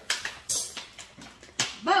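A few sharp clicks and a crinkle from a foil pie pan and a clear plastic lid being handled, spaced about half a second apart.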